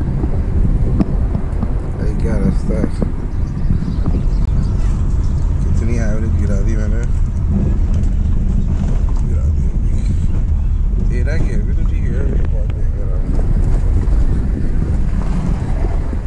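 Steady low rumble of a car driving on a rough road, heard from inside the cabin, with wind buffeting the microphone. Brief snatches of voices come through around two, six and eleven seconds in.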